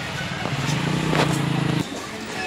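A motor vehicle engine runs steadily at one pitch from about half a second in and cuts off shortly before the end.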